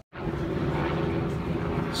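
A steady engine drone, even in pitch with a low hum, cutting in suddenly just after the start.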